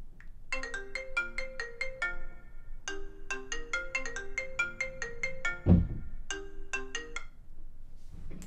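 A mobile phone ringtone playing a quick melody of bright, marimba-like notes in three phrases, with short gaps between them. A single low thump comes partway through, louder than the tune.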